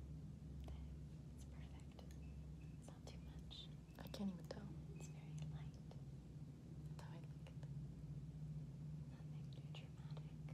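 Soft whispering with faint taps and rustles as a makeup brush and a pink blush compact are handled, over a steady low hum.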